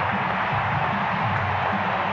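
A large ballpark crowd cheering in a steady roar, with low music playing underneath.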